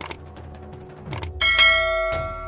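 Subscribe-button animation sound effect: a mouse click at the start, another click or two just after a second, then a bell chime about a second and a half in that rings on, over faint background music.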